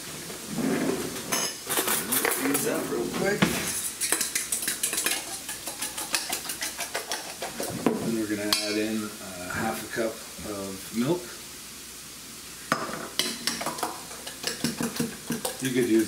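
Eggs being beaten in a stainless steel bowl: a utensil scrapes and clinks rapidly against the metal in long runs, with a short pause about three quarters of the way through. Onions sizzle in a frying pan underneath.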